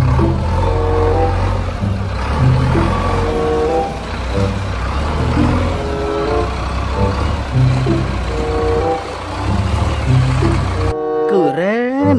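JCB backhoe loader's diesel engine running as the machine drives through shallow water, mixed with background music that has a repeating melody. Both cut off suddenly about a second before the end.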